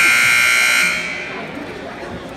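Gymnasium scoreboard buzzer sounding one loud, steady blast that cuts off about a second in, over crowd chatter.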